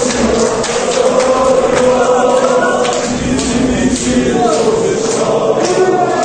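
Large crowd of male football supporters singing a slow chant together, many voices holding long notes in unison without a break.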